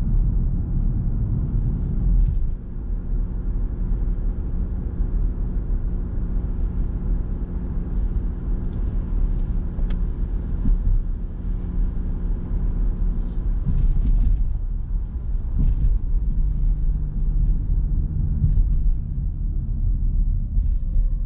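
Interior noise of a Nissan Note e-POWER AUTECH Crossover 4WD on the move: a steady low rumble of tyres and drivetrain with a faint hum that shifts lower in pitch in the last few seconds, as the car slows.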